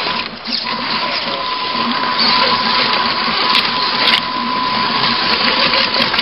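The RC rock crawler's electric drivetrain heard from on board: a steady high whine over a loud grinding, rattling noise as it crawls across wet river rocks. Both drop out briefly just after the start, then run steadily on.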